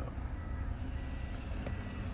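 Road and tyre noise inside a Tesla Model 3's cabin: a steady low rumble with no engine sound.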